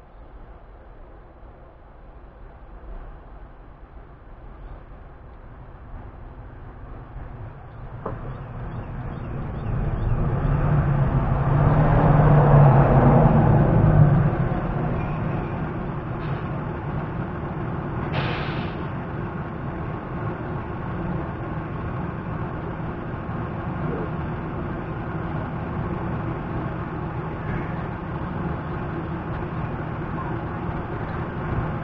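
A large motor vehicle's engine rumbling, growing louder over the first ten seconds and loudest about twelve to fourteen seconds in, then running on steadily. There is a short hiss about eighteen seconds in.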